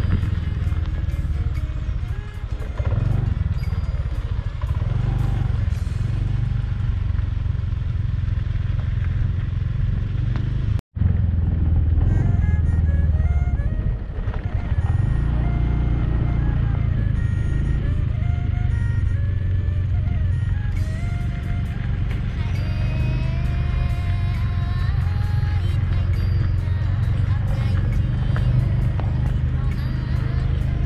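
Motorbike riding noise, a steady low engine and wind rumble, under background music with a stepped melody. The sound cuts out for an instant about eleven seconds in.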